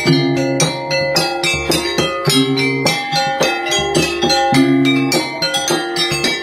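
Traditional Banjar panting music: plucked panting lutes playing a melody over ringing percussion, in a steady beat.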